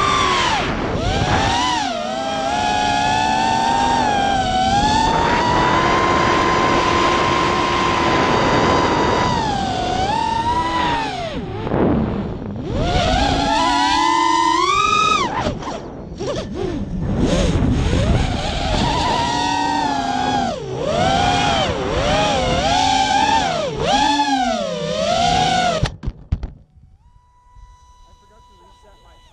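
FPV racing quadcopter's motors whining, heard from the onboard camera, the pitch rising and falling sharply with the throttle. The whine dips out briefly about twelve and sixteen seconds in and cuts off about two seconds before the end, with the quad lying on the ground.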